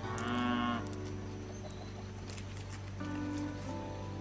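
A cow mooing: one short call at the start.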